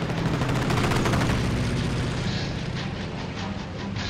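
Rapid bursts of machine-gun fire over the steady drone of a WWII piston aircraft engine, the firing thinning out after about two seconds.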